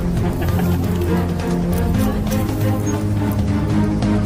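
Background music with low held notes that shift every second or so and light percussion over them.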